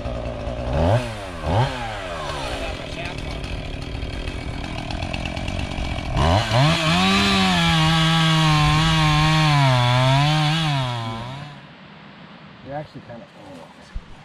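Two-stroke chainsaw running, blipped twice on the throttle about a second in, then held at full throttle cutting through a log from about six seconds in, its pitch wavering as the chain bites. Near the end the engine drops off and the sound falls away.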